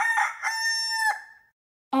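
Rooster crowing, a cock-a-doodle-doo sound effect. The call ends in a long held final note that dies away about a second and a half in.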